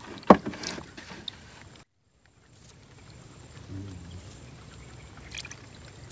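Handling noises from work in a wooden canoe: a sharp knock shortly after the start, then scattered faint knocks and rustles over a low steady background. The sound cuts out completely for about half a second near two seconds in.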